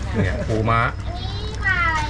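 A man's voice, then near the end a short high-pitched call that slides down in pitch.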